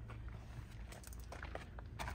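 Faint steady low hum with a few light knocks and clicks, typical of handling noise as a phone camera is moved around a parked car.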